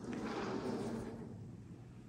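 Soft rustling handling noise of a pistol being lifted out of the foam insert of a plastic hard case, fading away after about a second.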